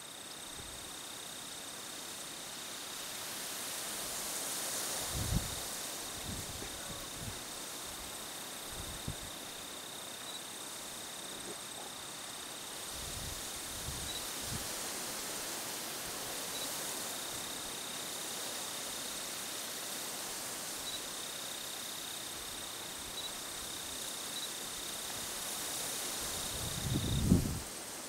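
Outdoor ambience: a steady, high-pitched insect trill runs over a soft hiss. A few soft low thumps come through, with a louder cluster near the end.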